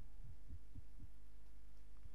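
Steady low electrical hum, with a few soft, low thumps about a quarter second apart in the first second.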